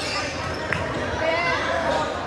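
Basketball bouncing on a hardwood gym floor during play, one sharp bounce standing out about a third of the way in. Voices of players and spectators echo around the large gym.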